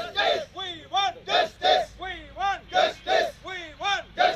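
A crowd of men shouting protest slogans together with fists raised, short loud calls repeating in a steady rhythm about twice a second.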